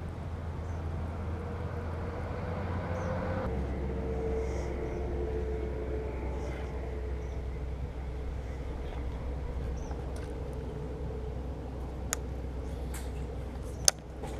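Steady low outdoor rumble with a faint wavering hum, changing character abruptly a few seconds in, and a few sharp clicks near the end.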